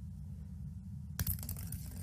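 A finger flick on a small ball and the ball running across a wooden tabletop: a sudden tap a little over a second in, followed by faint ticking as it travels, over a low steady hum.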